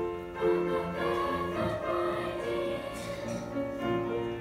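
Sixth-grade children's choir singing sustained notes in harmony.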